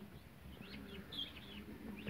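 Newly hatched guinea fowl keets peeping: a few short, faint, high peeps.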